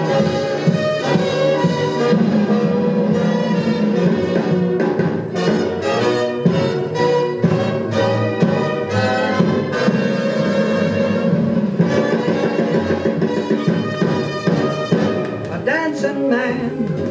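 Orchestral film-soundtrack music with strings playing from a 45 rpm record: an instrumental passage with no singing.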